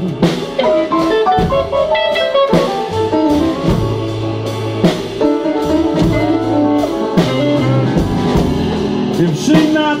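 Live blues band playing an instrumental passage between vocal lines: electric guitar and piano over upright bass and drums, with a steady beat.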